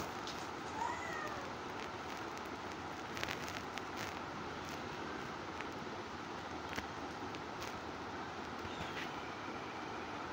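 Faint, steady room hiss with a few small clicks, and a short high call that rises and falls about a second in.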